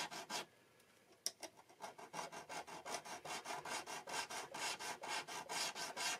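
A small file scraping back and forth across a low, wide guitar fret to recrown it after levelling, in quick even strokes of about four a second. The strokes stop briefly with a single click about a second in, then carry on.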